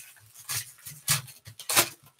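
Foil trading-card pack wrapper being torn open and crinkled by hand, in three sharp crackling bursts, the last one the loudest.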